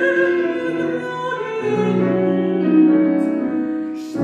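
A female classical singer in operatic style, accompanied on grand piano, sustaining long notes with vibrato; the phrase breaks off briefly near the end, just before she starts a new one.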